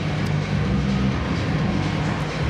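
Muffled live band music coming through the walls, heard mostly as its bass: a loud low rumble whose notes shift every fraction of a second.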